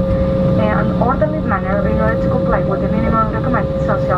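A crew announcement over the cabin PA of an airliner taxiing after landing, heard over the steady drone of the cabin with a constant whine.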